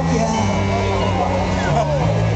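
Amplified live band music in a pause between sung lines: the bass holds and steps between low notes, with people's voices over it.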